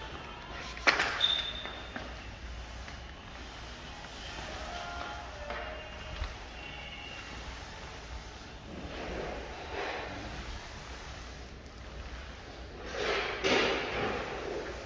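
Pole-mounted pad applicator being pushed across a hardwood floor to spread tinted polyurethane, giving soft swishing strokes. There is one sharp knock about a second in.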